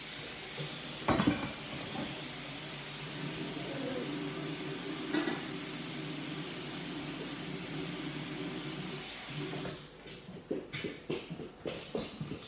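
A steady hiss with a faint hum in it, broken by a single knock about a second in and another about five seconds in, stops suddenly about ten seconds in; a few light knocks and clicks follow near the end.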